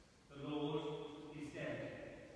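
A man's voice chanting: one long note held at a steady pitch, then a second, differently voiced syllable about one and a half seconds in.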